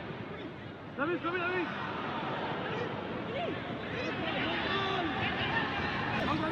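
Scattered shouts and calls from footballers on the pitch, heard a few times over a steady hiss of open-stadium ambience.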